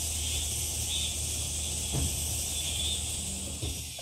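Steady high-pitched chorus of insects with a low hum underneath.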